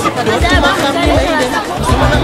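Several people talking at once in close, overlapping chatter.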